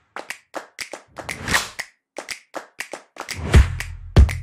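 Outro logo sting: a quick, irregular run of sharp clicks, taps and short swooshes, then electronic music with a deep bass and a steady beat coming in near the end.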